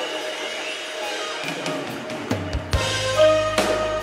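Live worship band music: held chords for the first two seconds, then the drum kit and bass come in a little over two seconds in, with sharp drum hits over the sustained chords.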